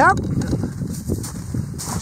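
Wind buffeting the microphone out on open lake ice, an uneven low rumble.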